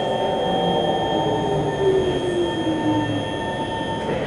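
Kawasaki C151 metro train's Mitsubishi GTO chopper traction equipment whining over the rumble of the wheels on the rails. A motor tone falls steadily in pitch over about three seconds as the train slows. Steady high-pitched whines run throughout.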